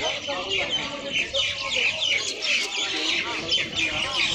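Many birds chirping at once, a dense chatter of short, quick calls that thickens about a second in, over a murmur of people's voices.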